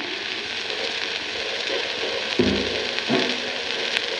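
Surface noise of a shellac 78 rpm record, a steady hiss with light crackle, as the stylus plays the start of the groove. About two and a half seconds in, the jazz quintet's first notes come in over the hiss, with another about three seconds in.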